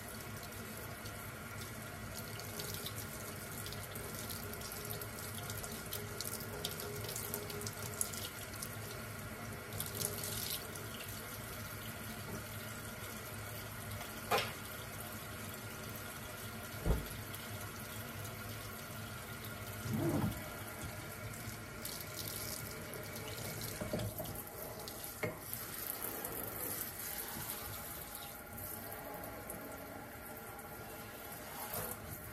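Water running steadily from a kitchen faucet into a stainless steel sink, rinsing soap suds out after scrubbing. A few short knocks sound partway through.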